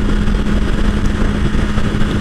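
BMW S1000XR inline-four engine running at a steady cruising speed, one even engine note held without rising or falling, under the rush of wind and road noise.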